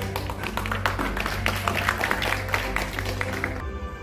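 Scattered hand clapping from an audience over background music, the clapping cutting off abruptly near the end.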